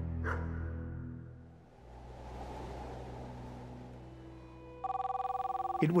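Low sustained background music fades out, leaving a soft hiss. Near the end a telephone starts ringing: an electronic ring of two tones trilling rapidly together.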